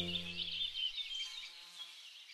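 Canary twittering in rapid high chirps and trills over the last held chord of the theme music, which dies away in the first second; the whole sound fades out.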